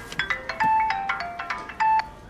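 Mobile phone ringtone: a quick tune of short ringing notes that cuts off abruptly near the end.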